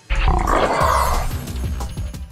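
Intro jingle hitting a loud roar-like sound effect with a heavy low end, which starts suddenly and dies away toward the end.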